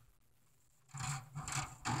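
Handling noise from the camera phone being moved: rubbing and scraping in three short bursts about a second in, after a brief knock at the very start.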